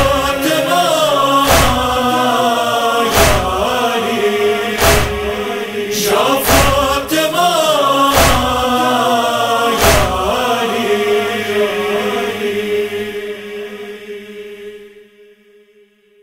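A chorus of voices chants the closing lament of a noha without words, over a heavy percussive beat about every 1.7 seconds. The beats stop about ten seconds in, and the chanting fades out to silence by the end.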